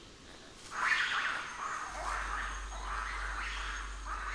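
A run of repeated high-pitched animal calls, about two a second, starting about a second in.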